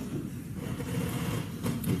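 Courtroom room noise picked up by the lectern microphone: a low, uneven background noise.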